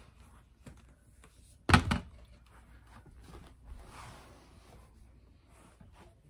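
A loud hard thunk, a quick double knock, about two seconds in as hard plastic parts of the spot cleaner and its solution bottle are handled, then faint rustling. The cleaner's motor is not running.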